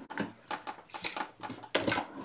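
Light clicks and knocks of hand tools being handled while bent-nose jewellery pliers are picked up, a quick irregular run of several small taps.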